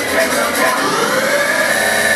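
Afro house DJ mix in which a sweep climbs in pitch for about a second and then holds high over the track.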